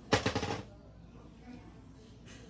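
A brief rattling clatter of small hard objects: a quick run of clicks lasting about half a second, just after the start.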